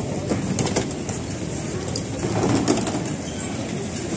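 Busy metro platform ambience: a crowd of passengers walking and talking over the steady hum of the station, with a louder stretch of voices about two and a half seconds in.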